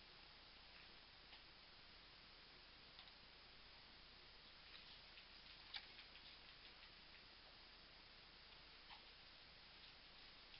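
Near silence: room tone with a few faint, scattered ticks, a small cluster of them around the middle.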